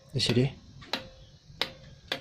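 A running-light chaser controller clicking sharply, about once every 0.7 s, as it steps the string lights from channel to channel while its speed knob is turned.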